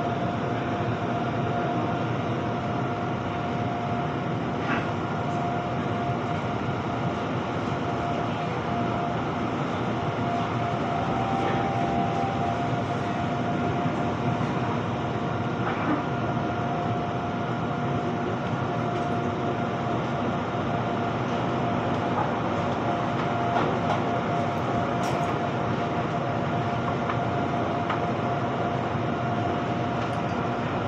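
Inside an electric commuter train, the train runs with a steady rumble and a constant hum.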